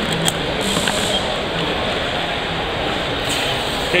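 Serrated pocket-knife blade drawn through a handheld sharpener's honing rods, the steel chattering over the teeth in short scraping strokes about half a second in and again near the end. Steady background noise of a crowded hall runs underneath.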